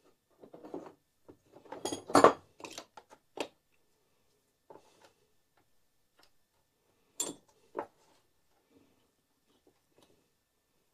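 Clinks, clicks and knocks of small metal tools and parts being handled on a workbench: a flurry in the first few seconds, loudest just after two seconds in, then two sharp clicks a little over half a second apart about seven seconds in.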